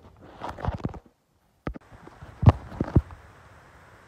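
Handling noise from a phone held close to its microphone: a few irregular knocks and rustles, the loudest about halfway through, with a brief cut to dead silence early on.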